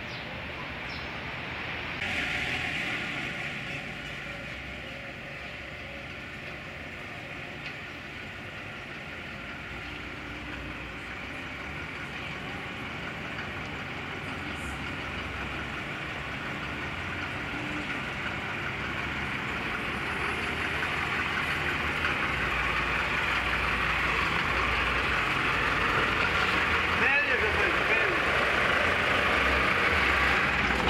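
A car engine running near a kerb, with background voices; the sound grows louder through the second half.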